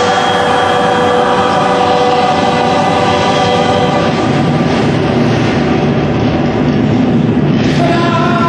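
Loud dark-ride special-effects soundtrack: several sustained horn-like tones held together over a hissing, rumbling noise as smoke bursts through the scene. The tones fade about four seconds in and a low rumble grows.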